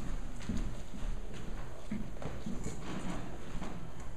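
Footsteps of shoes on a wooden floor, about two steps a second.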